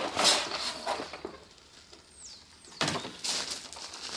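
Rustling and scraping of a fabric storage bag as a plastic hose reel is pulled out of it, in bursts at the start and again near the end. In the quieter gap between, a bird gives two short, high whistles that fall in pitch.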